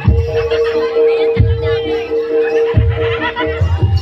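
Jaranan gamelan music played loud, with a steady held note over heavy low drum and gong strokes about every 1.4 seconds and wavering high tones above.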